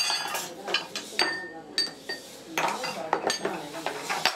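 Thin metal strips and hand tools clinking and knocking against a metal workbench and bending form: about half a dozen sharp metallic strikes, several ringing briefly.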